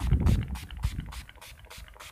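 Avon rose water sprayed onto the face from a pump spray bottle: a rapid run of short spritzes, about five a second, growing fainter toward the end.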